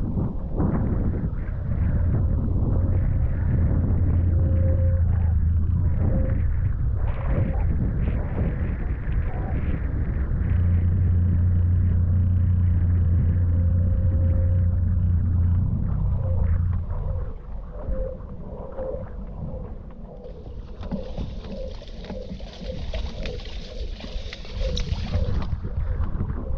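Wind and water noise on a camera microphone while wing foiling on a hydrofoil board. A steady low hum runs under the noise for two long stretches, it quietens about two-thirds of the way in, and a higher hiss rises near the end.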